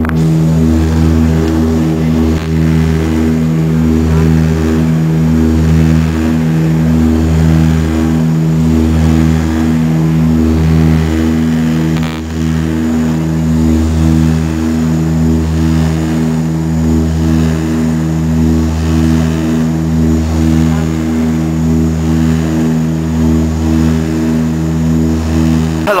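Turboprop airliner's engine and propeller running at takeoff power, heard from inside the cabin: a loud, steady drone with a slow, regular throb about once a second, as the plane rolls down the runway and climbs away.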